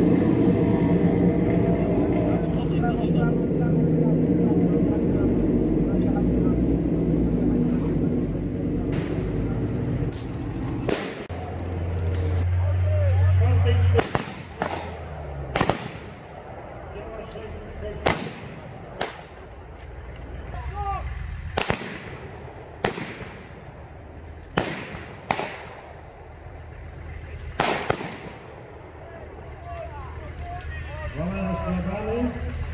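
Blank rifle shots in a staged battle: about a dozen single reports, irregularly spaced, each with a short echo, through the second half. Before them, a dense, steady low sound, ending in a strong low hum for about three seconds.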